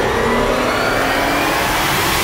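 A rising whoosh that climbs slowly in pitch and builds a little in loudness, like a riser sound effect in the edit.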